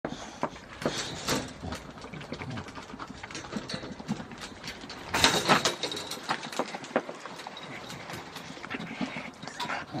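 Two dogs play-fighting: a run of short, irregular mouthing and scuffling noises, loudest in a burst about five seconds in.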